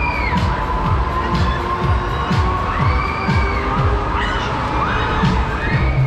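Riders on a spinning Break Dance ride screaming in long, high, wavering shrieks, a few times, over loud fairground dance music with a steady beat.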